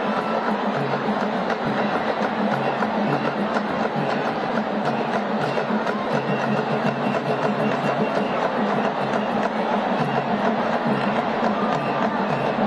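Live drum-led music with a steady repeating beat accompanying a traditional dance, over the noise of a large stadium crowd.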